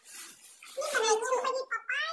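A high-pitched voice, a child's or a woman's, vocalizing with a wavering pitch and no clear words, starting a little under a second in, after a brief rustle at the start.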